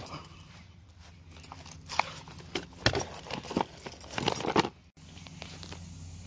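Handling noise of a phone camera being set up on a tripod: scattered clicks, knocks and rubbing, with one heavier thump about three seconds in. The sound drops out briefly just before the five-second mark.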